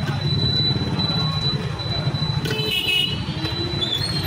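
Busy street noise: a steady low traffic rumble with a thin high whine running under it, and a short horn toot about two and a half seconds in.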